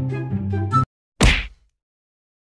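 Background music that stops abruptly, then, just over a second in, a single short edited-in sound-effect hit with a downward sweep.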